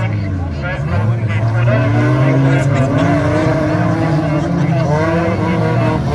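Several small-capacity stock cars (up to 1800 cc) racing on a dirt track, their engines revving up and down over one another. The sound grows louder about a second in as the pack comes nearer.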